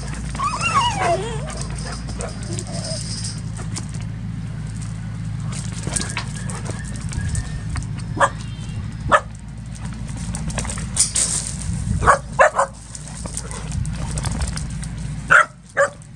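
Two dogs, one a Hungarian vizsla, play-fighting: whining yips in the first second or so, then short sharp barks now and then, about eight and nine seconds in, twice around twelve seconds and twice near the end.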